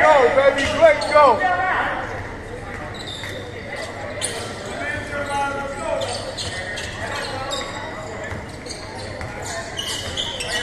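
Basketball sneakers squeaking on a hardwood gym floor in a quick flurry over the first two seconds, then a basketball bouncing with scattered knocks, echoing in a large gym.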